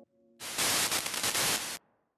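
A burst of static-like hiss, about a second and a half long, that starts just under half a second in and cuts off abruptly near the end. At the very start, the last of a faint held music chord dies away.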